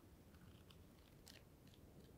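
Near silence: room tone with a few faint, brief crackles of paperback pages being handled and turned.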